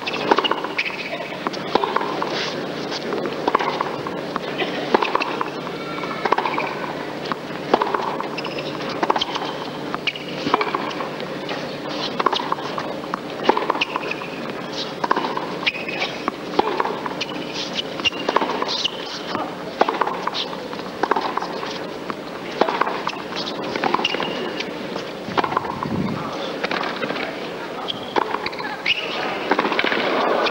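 Tennis rally on a hard court: rackets strike the ball back and forth, with ball bounces between the hits, a sharp knock every second or less. Under it runs a steady background of arena crowd noise.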